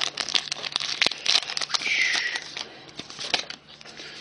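Foil Pokémon booster pack wrapper crinkling and tearing open as the cards are pulled out, with a quick run of small crackles and rustles that dies down near the end.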